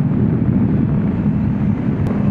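Honda CB500X parallel-twin engine running at a steady cruising speed through an aftermarket GPR exhaust, with wind noise on the helmet microphone.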